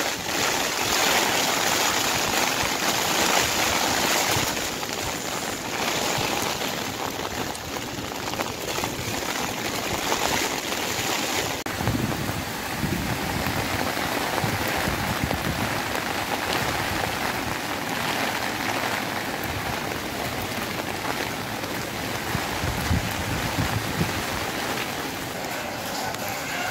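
Heavy typhoon rain and strong storm wind, a dense steady rushing with irregular gusts; the sound changes abruptly about twelve seconds in.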